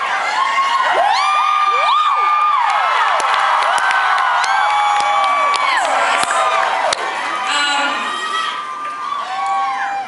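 Concert audience cheering and screaming, many high-pitched shouts and whoops overlapping, thinning out near the end.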